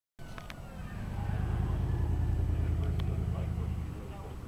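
A motor vehicle's engine running close by, a low rumble that swells to its loudest in the middle and eases off near the end.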